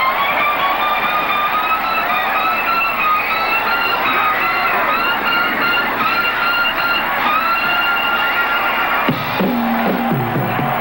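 Live rock band playing, led by an electric guitar holding long, slowly rising and bending sustained notes. About nine seconds in, the high notes break off and lower notes come in.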